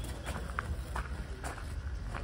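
Footsteps on grass over a steady low rumble, with a few faint soft ticks.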